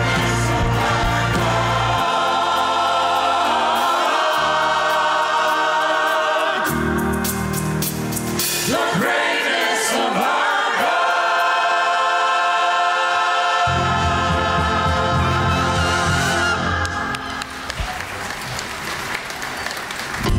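Choir singing sustained lines with orchestral accompaniment. The deep bass drops out for several seconds midway, and the music grows softer near the end.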